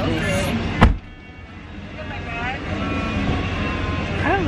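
Low, steady road noise inside a car cabin, with voices at the start. A single loud thump comes just under a second in, after which everything drops suddenly quieter and the low cabin rumble carries on.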